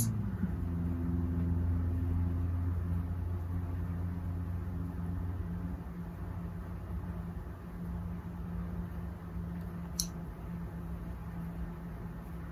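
A steady low machine hum, with faint handling of a small fabric appliqué piece being turned right side out by hand, and one small click about ten seconds in.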